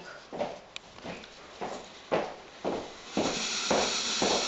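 Footsteps walking across an office floor, about two steps a second, with a rustling hiss joining near the end.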